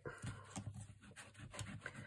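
Ink pad dabbed and rubbed over a rubber stamp to ink it: faint, quick, irregular taps and scuffs.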